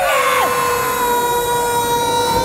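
Two cartoon characters' long, steady screams, one voice higher than the other, as they are knocked flying through the air by a punch.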